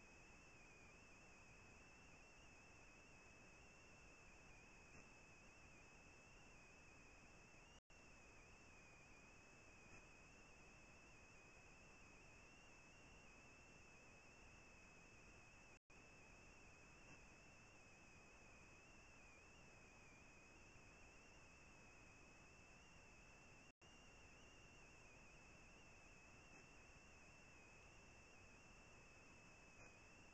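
Near silence: the microphone is switched off, leaving only a faint steady hiss with a thin high-pitched whine, cut by brief dropouts about every eight seconds.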